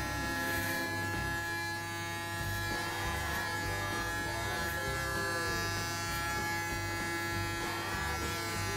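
A steady buzz made of several fixed tones that hold unchanged throughout, over a soft, uneven low rumble.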